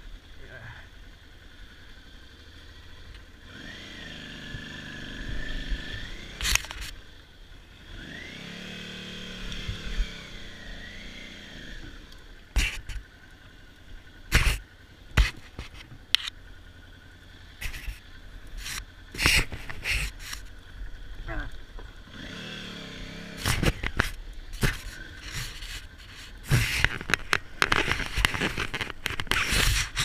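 Big adventure motorcycle's engine revving up and down twice in the first half as it is eased over rough ground. Then comes a long run of sharp knocks and clunks as the bike jolts over rocks, thickest near the end.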